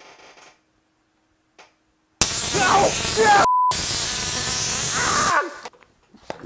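A Tesla coil firing about two seconds in: a loud, hissing arc discharge that lasts about three seconds and then cuts off, with a man yelling over it and a short censor bleep in the middle.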